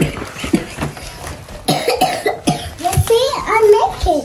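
Short coughs and a child's wordless voice, loudest near the end.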